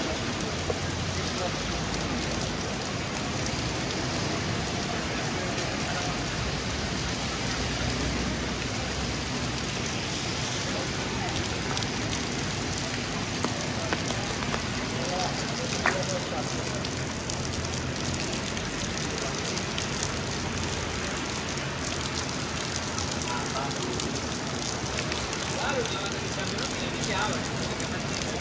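Steady rain on a wet city street, an even hiss with scattered small drips and clicks. Traffic and people's voices run underneath.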